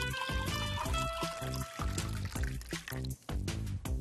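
Background music with a steady beat and a few held bell-like notes in the first two seconds, over the sound of cooking oil being poured into a bottle of water.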